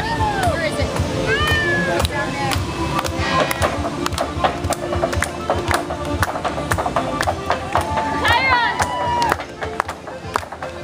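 Irish dance music playing from a float's loudspeakers, with many sharp taps from dancers' shoes on the trailer deck and high voices calling out over it, twice with rising-and-falling cries.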